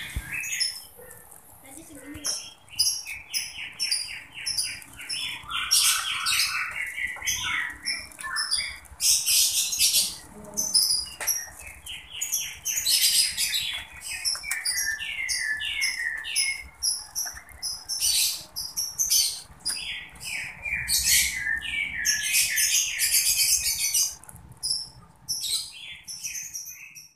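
Small birds chirping in quick runs of notes that step downward, again and again, with bursts of crinkling from thin wrapping paper handled by hand.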